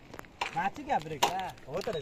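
People talking, with a few short sharp clicks or knocks among the words.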